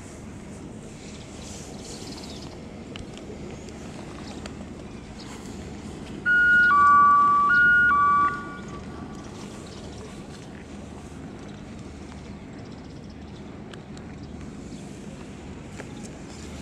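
A loud two-tone horn sounds for about two seconds, about six seconds in, stepping between a higher and a lower pitch twice, over a steady low rumble of background noise.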